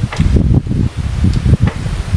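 Wind buffeting an outdoor microphone: an uneven low rumble, with a few faint clicks.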